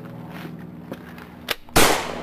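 A single loud, sharp gunshot near the end, over a steady low hum.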